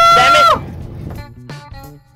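A long, loud, high cry of dismay as a hooked fish comes off the line. A quieter spoken remark follows, and plucked guitar music begins just over a second in.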